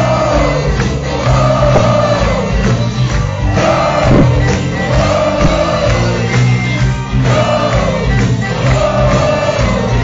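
Live blues-rock band playing loudly, heard from among the audience, with voices singing a phrase that rises and falls and repeats about every two seconds.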